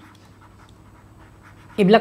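A pause in a man's speech with only faint background noise, then his voice resumes near the end.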